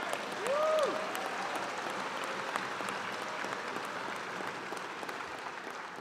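Audience applauding steadily, with one short rising-and-falling call from a voice about half a second in.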